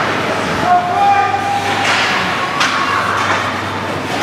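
Ice hockey game in an indoor rink: skates scraping and gliding on the ice and spectators' voices over a steady low hum, with one drawn-out call about a second in.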